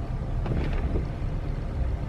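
Steady road and engine noise inside the cabin of a moving pickup truck, a low rumble with no distinct events.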